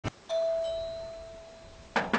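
Doorbell chime: a single ding that fades slowly over nearly two seconds, just after a short click, followed by a sharp knock near the end.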